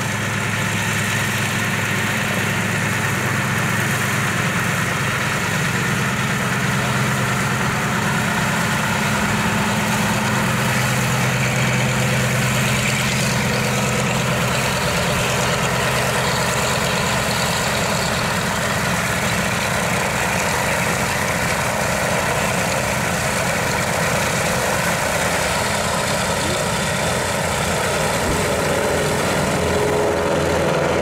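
Douglas C-47 Skytrain's two Pratt & Whitney R-1830 Twin Wasp radial engines running at low taxi power, a steady, even drone. Near the end the engines of a second twin radial-engined propeller plane passing low overhead come in.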